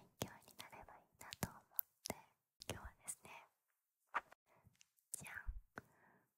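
A woman whispering in Japanese close to a handheld recorder's microphones, in short phrases with sharp clicks between them.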